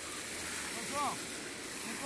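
Steady outdoor background noise, an even rushing hiss, with one short faint call falling in pitch about a second in.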